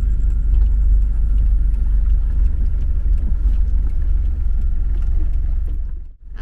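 Steady low engine and road rumble heard inside the cabin of a Mitsubishi Delica Starwagon camper van as it rolls along the road shoulder to park.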